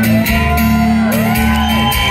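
Amplified acoustic guitar played loudly and steadily, with audience members whooping and shouting over it; a couple of whoops rise and fall in the middle.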